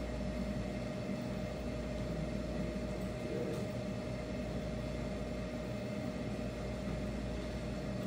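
Steady mechanical hum of the room's machinery, with a faint constant whine running through it.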